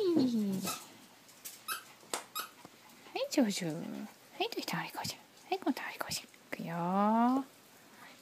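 Toy poodles whining excitedly in play, with short pitched sounds sliding down in pitch and a few brief squeaks, among a woman's drawn-out calls to them.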